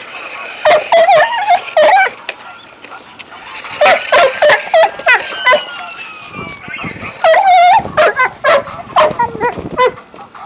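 Red-nosed pit bull barking and yipping in short, loud, high-pitched bursts while it bites at a toy RC police truck. The bursts come in three clusters, near the start, in the middle and in the last few seconds.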